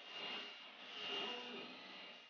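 Several desktop 3D printers running at once, heard faintly: stepper motors whirring and whining in shifting pitches as the print heads and beds move.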